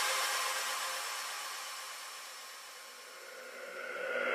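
A white-noise wash with no bass, fading steadily away over about three seconds: a DJ transition effect between two electronic tracks. It swells slightly again near the end as the next track comes in.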